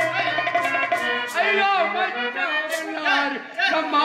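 Live stage-drama music: a voice singing in gliding phrases over held accompaniment, with sharp hand-drum strokes now and then.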